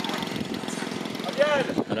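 Radio-controlled model airplane's piston engine running, a fast, even buzzing rattle.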